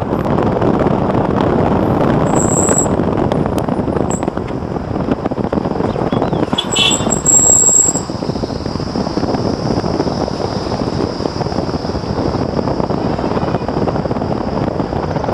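Steady rumble of a moving road vehicle, engine, tyres and wind noise heard from on board. Two short high-pitched tones cut through, the first about two seconds in and a louder one around seven seconds.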